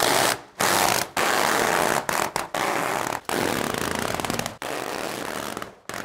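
Self-adhesive carpet protection film being peeled off its roll as it is unrolled across carpet. It makes a loud, rasping crackle in several long pulls, broken by short gaps.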